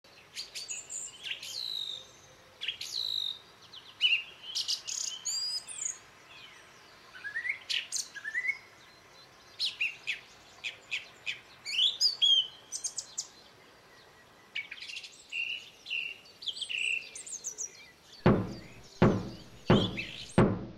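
Songbirds chirping and calling, with short whistled sweeps and trills. Near the end come heavy knocks, about three fifths of a second apart.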